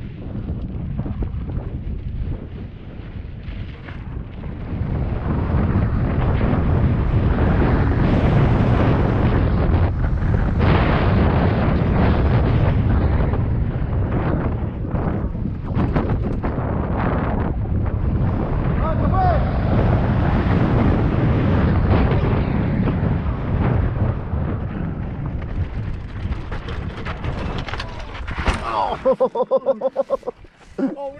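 Wind buffeting a helmet camera's microphone and mountain-bike tyres rattling over a loose dirt and gravel trail on a fast descent, the noise swelling as speed builds. Near the end it breaks into a few sharp knocks and a short cry as the rider falls.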